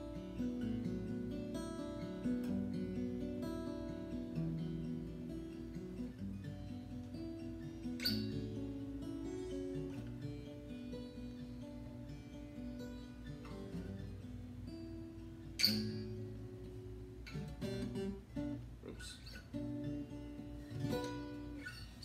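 Acoustic guitar playing a chord progression in B minor, the notes picked one after another and left ringing over each other, with two sharper, louder strikes along the way.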